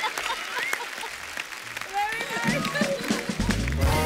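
Studio audience applauding, with voices calling out over the clapping. A short burst of music comes in loudly near the end.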